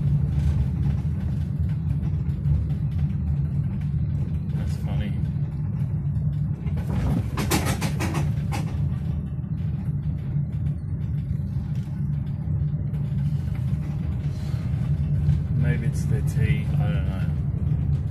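Steady low rumble of a car's engine and tyres heard from inside the cabin while driving slowly, with a short burst of rattling noise about seven to eight seconds in.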